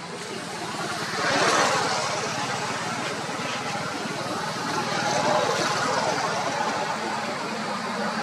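Motor vehicle traffic going by, its engine and road noise swelling about a second in and again around five seconds.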